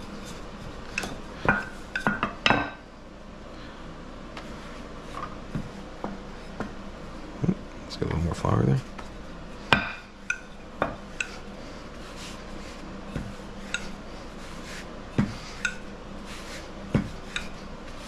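Tapered wooden rolling pin being rolled back and forth over stacked pancake dough on a wooden cutting board, with scattered light clicks and knocks as the pin and hands shift on the board, and a heavier knock about eight seconds in.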